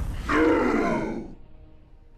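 A man's loud yell, falling steadily in pitch over about a second and then fading out. It starts just as a loud, noisy rumbling effect cuts off.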